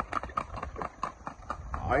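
A horse's hooves on asphalt at a fast andadura gait: a quick, even run of sharp hoofbeats, several a second.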